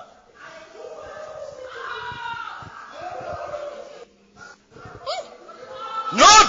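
A voice, quieter than the preaching, making drawn-out voiced sounds with no words the recogniser could make out, then a brief rising vocal glide near the end.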